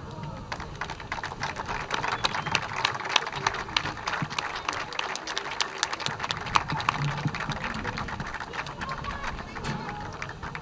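An audience applauding: many hands clapping steadily.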